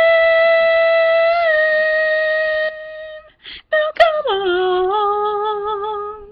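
A woman's voice singing unaccompanied, wordless long held notes: one long note that dips slightly in pitch partway and fades out, a quick breath, then a note that slides down and is held with a slight waver.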